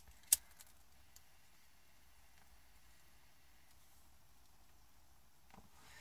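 Near silence with quiet room tone, broken by one sharp click about a third of a second in and two faint ticks within the next second.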